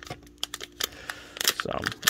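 Light crackles and clicks of a plastic trading-card pack wrapper being pinched and worked open by hand, over a faint steady hum.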